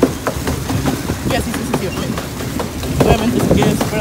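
Pedal boat's pedal cranks and paddle wheel clattering with irregular clicks and knocks as the riders pedal, over a low rumble.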